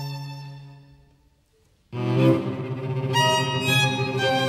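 String quartet playing live: a held chord dies away to near silence, then about two seconds in the strings come back in suddenly and loudly with a full, sustained chord.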